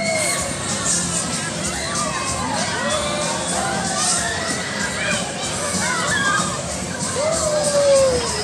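Children shouting and calling out on a spinning fairground ride, many voices overlapping with rising and falling pitch, over the steady noise of a crowd.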